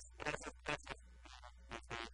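A man talking in short, quick phrases, with a steady low hum underneath.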